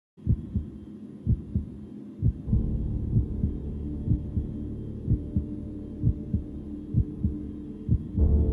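Heartbeat sound effect: a low double thump, lub-dub, about once a second. A low steady drone joins it about two and a half seconds in.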